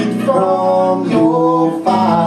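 Live band playing: electric guitars over drums, with a melody line of held notes stepping up and down.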